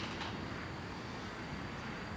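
Distant road traffic heard as a steady, even hum of outdoor background noise, with a short click at the very start.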